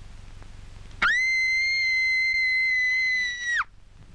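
A single shrill, very high-pitched scream, held at a steady pitch for about two and a half seconds from a second in, then dropping sharply as it cuts off.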